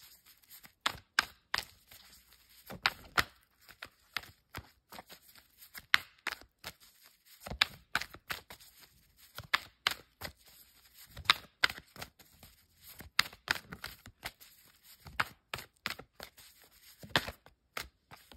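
A deck of tarot cards being shuffled by hand: a steady run of irregular light clicks and flicks of card edges, a few of them louder snaps.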